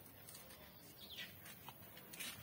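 Near silence: faint outdoor background with one faint, short bird chirp, a high note sliding down, about a second in.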